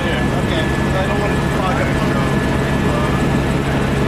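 Helicopter engine and rotor running steadily, heard from inside the cabin as a dense low drone with a constant thin high whine. Faint voices sit on top.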